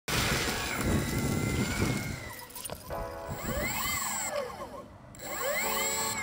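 Electric skateboard with a belt-driven outrunner motor rolling over gravel for about two seconds: wheel and gravel rumble with a steady high whine. From about three seconds in, music with swelling, rising-and-falling synth tones takes over.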